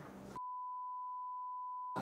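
A censor bleep: one steady, pure mid-pitched beep that starts about half a second in and lasts about a second and a half. All other sound is muted beneath it, covering a spoken brand name.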